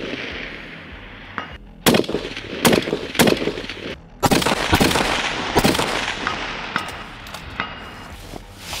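Bolt-action precision rifle firing a string of shots in fairly quick succession, each crack trailing off in a long rolling echo.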